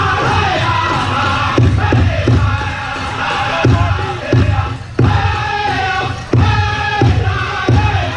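Powwow drum group singing a men's chicken dance song: high, strained unison voices over a large powwow drum, with beats that come in uneven clusters.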